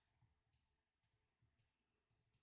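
Near silence, with a few very faint clicks about half a second apart.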